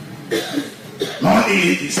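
A man speaking French into a microphone, with a short cough in the first half second before he goes on.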